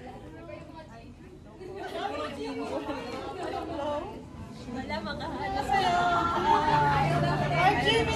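A group of people chattering and talking over one another in a large room, with a low steady hum coming in near the end.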